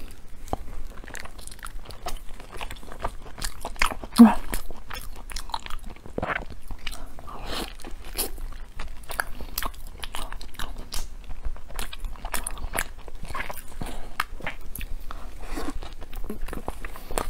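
Close-miked eating sounds of a soft, cocoa-dusted mochi with a creamy filling being bitten and chewed, with many small mouth clicks throughout. A short vocal sound comes a little past four seconds in.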